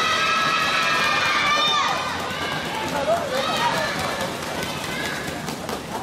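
High-pitched young women's voices shouting and calling in a reverberant sports hall: one long held call over the first two seconds, then shorter calls, with scattered sharp knocks throughout.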